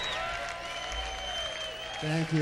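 A large audience applauding after a number, with a few steady instrument tones held on over the clapping.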